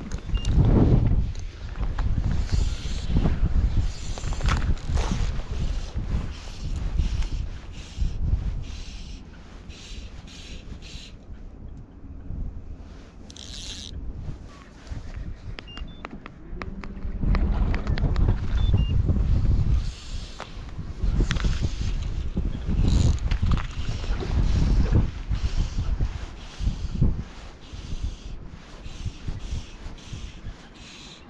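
Gusty wind buffeting the microphone, rumbling and coming and going, with strong gusts in the first few seconds and again through the second half.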